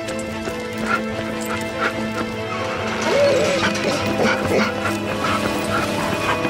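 Film score music with held chords, over which a small dog gives short vocal sounds, with one rising-and-falling whine-like call about three seconds in.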